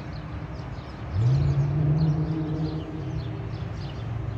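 A motor vehicle's engine accelerating, its note rising about a second in and loudest until near the end, over a steady low traffic rumble. Small birds chirp throughout.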